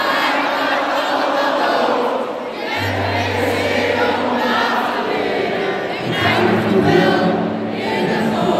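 Large arena crowd singing along with live pop music, many voices blended like a choir over a steady bass line.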